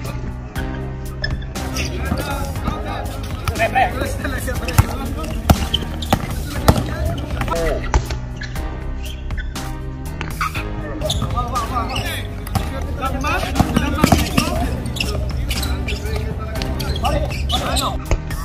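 A basketball bouncing on a hard outdoor court, with a few sharp bounces in the middle, amid players' shouts and background music.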